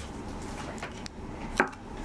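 A drink container set down on a wooden desk: a few light taps, then a sharp knock about a second and a half in.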